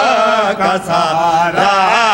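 Several men's voices chanting a devotional Urdu qasida refrain together, unaccompanied, in long drawn-out melismatic phrases.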